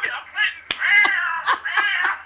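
Cat-like meowing: drawn-out calls that waver in pitch, with a sharp click about a third of the way through.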